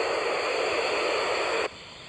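Static hiss of the Yaesu FT-817ND's FM receiver tuned to the SO-50 satellite downlink. It drops away suddenly near the end.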